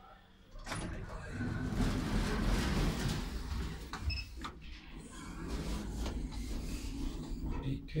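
Lift car machinery: a low hum and rumble starts about half a second in and runs on, with a few clicks and a short high electronic beep about four seconds in.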